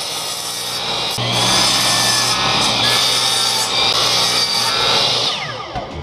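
Electric compound miter saw running and cutting through a wooden dowel, then the blade spinning down with a falling whine over the last second.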